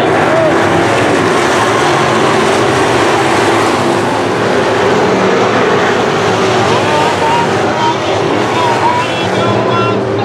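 Engines of several sport modified dirt-track race cars running together, a steady loud drone with no break.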